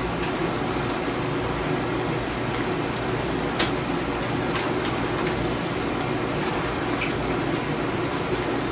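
Bean sprouts sizzling in a hot skillet, a steady frying noise with a few short sharp crackles scattered through it.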